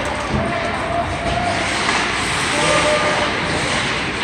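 Rink ambience during an ice hockey game: a steady wash of skates scraping across the ice, with faint wavering calls from players.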